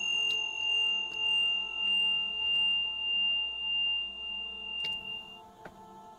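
A single high, pure ringing tone that swells and fades in a slow pulse for about five seconds, then stops. It sits over a soft, steady background music drone.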